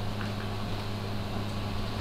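Steady low hum over a faint even hiss, with no other events.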